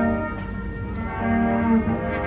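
A ceremonial brass bugle call played in long, held notes: one note fades out just after the start, and a new note sounds for about half a second near the end.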